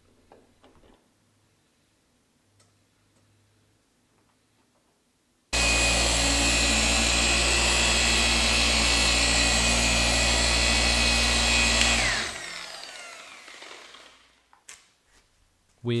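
Electric paint polisher buffing car paint at the cutting stage of a paint correction. It starts suddenly partway through, runs at a steady speed for about six seconds, then is switched off and winds down with a falling whine.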